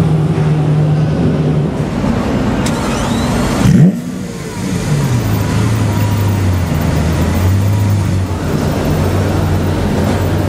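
Lamborghini Aventador LP700-4's V12 engine idling, with one sharp rev blip a little under four seconds in that cuts off suddenly. After the blip the idle drops to a lower, steady note.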